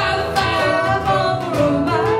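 A small acoustic band playing live: a man singing lead over strummed acoustic guitars, keyboard and cajon, with a steady beat.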